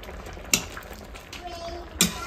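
A pot of food bubbling softly on a wood-fire stove, with one sharp metal clink of a utensil or pot about half a second in.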